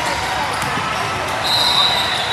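Basketball game ambience in a large echoing hall: many voices chattering and calling, with basketballs bouncing on hardwood. A high steady squeak starts about one and a half seconds in.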